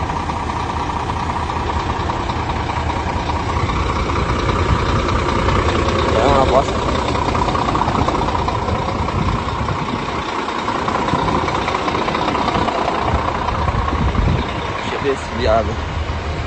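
Heavy truck's diesel engine idling steadily, a continuous low rumble with a steady whine above it.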